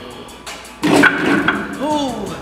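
A man's loud, strained yell from the effort of a heavy chest press rep, starting suddenly with a thud just under a second in. Near the end it trails into a falling groan. Background music plays underneath.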